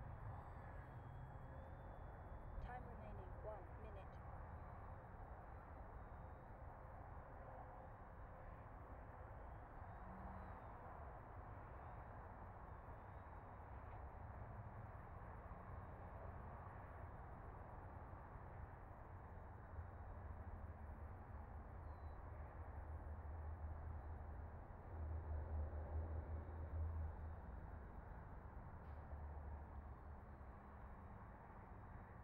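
Faint, wavering whine of a small RC foam plane's electric motor at a distance, rising and falling with the throttle, over a steady rumble of wind on the microphone that swells about three-quarters of the way through.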